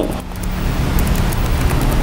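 A steady low rumble of background noise, with faint, scattered computer keyboard key clicks as a word is typed.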